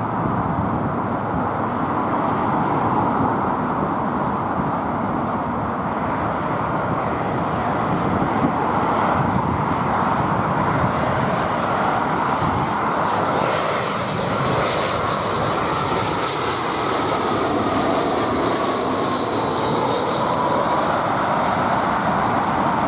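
British Airways Airbus A320-232's IAE V2500 turbofan engines on final approach, a steady jet noise as the airliner passes low overhead. In the second half a whine falls in pitch as it goes by.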